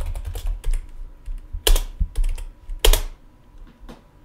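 Typing on a computer keyboard: a quick run of keystrokes with two heavier key presses a little over a second apart, near the middle.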